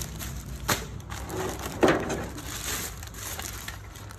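Plastic packaging bag and crumpled wrapping sheet crinkling and rustling as they are handled and pulled off, with a few sharp crackles, the loudest about two seconds in.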